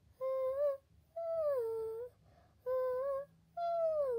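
A high female voice humming a wordless melody, unaccompanied, in four short phrases with brief silences between them. The second and last phrases slide down in pitch.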